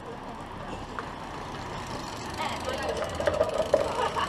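Steady wind and tyre-rolling noise on a camera carried by a rider on a fat-tyre e-bike, with a couple of small clicks. Indistinct voices come in during the second half.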